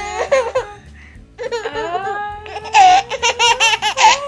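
High-pitched laughter: drawn-out gliding vocal sounds, then a quick run of short giggling bursts in the second half.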